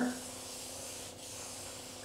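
A drawing tool rubbing steadily across a large sheet of paper as a curved line is drawn.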